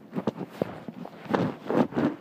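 Handling noise: a few irregular knocks and rustles as the recording phone or camera is picked up and moved about.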